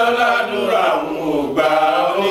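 Men's voices chanting together in a devotional Islamic chant, the sung line sliding up and down in pitch.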